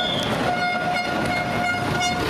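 A horn sounding one long steady note with overtones, over a rushing noise.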